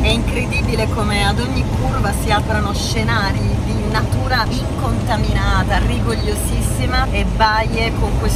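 A woman talking inside a moving car, over the steady rumble of road and engine noise in the cabin.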